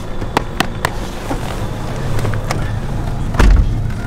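Car engine idling with a steady low rumble while someone climbs into the passenger seat: a few sharp clicks and knocks, then a loud low thud near the end as the car door is shut.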